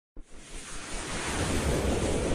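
Logo-intro sound effect: a wind-like noise swell that starts suddenly and builds steadily louder, with a low rumble underneath.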